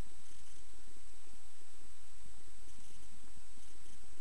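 Cessna 172S's four-cylinder engine idling during taxi: a low steady rumble through the cockpit audio feed, with a thin steady high tone above it.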